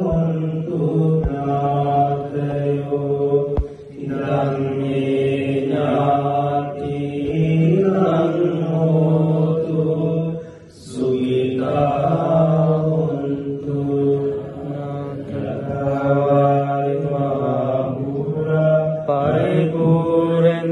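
Buddhist monks chanting Pali verses in a steady, droning monotone, with short breath pauses about 4 and 10.5 seconds in. The chant accompanies the water-pouring rite that transfers merit to the deceased.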